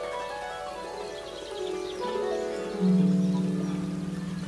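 Solo harp playing slow, ringing plucked notes that overlap and die away, with a loud low note plucked near the end that rings on.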